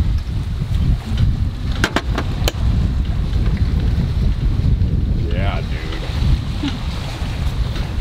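Wind buffeting the microphone in a steady low rumble. About two seconds in, a few sharp clinks of utensils on dishes, and a brief snatch of voice a little past halfway.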